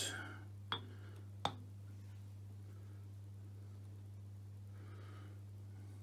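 Two sharp metallic clicks as a cast-iron lathe tailstock base is set down on the lathe bed, the second about a second after the first, over a steady low hum.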